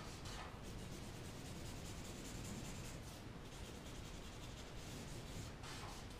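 Black marker tip scratching across kraft paper in quick, repeated hatching strokes as a dark plane is shaded in; faint and continuous.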